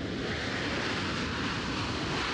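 Jet engines of a US Air Force C-17 four-engine transport running as it rolls along a dirt airstrip: a steady, even rushing noise.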